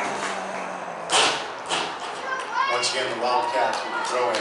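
Girls' voices calling out and chattering on and around the field, high-pitched and overlapping, with one short, loud noise about a second in.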